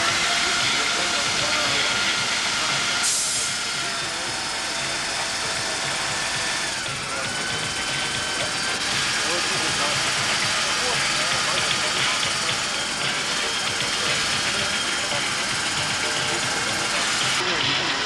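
Steady loud hiss with faint, indistinct voices of people talking underneath.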